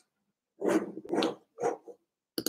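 A dog barking three times in quick succession, each bark short, the last one briefest.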